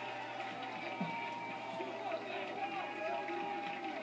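Crowd of spectators chattering and calling out, many voices overlapping, heard through a television's speaker with a low steady hum under it.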